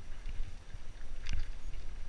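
Mountain bike rolling down a dirt trail, heard from a helmet camera: a steady low rumble of wind buffeting and tyres over the ground, with a sharp clatter of the bike rattling over a bump about a second in.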